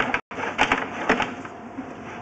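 Irregular clicking, knocking and scraping as a sewer inspection camera's push cable is fed down a drain pipe, with a brief cut-out of the sound just after the start.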